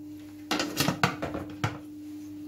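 Spatula scraping and knocking against the stainless-steel Thermomix mixing bowl as the mixture is pushed down to the bottom: a quick run of five or six short knocks in about a second.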